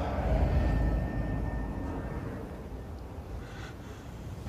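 Low rumble of film sound design, loudest in the first second and a half and then easing off, with a faint thin high tone held for about a second.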